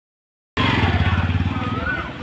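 Motor scooter engine running close by, then fading near the end as it passes, with voices in the street.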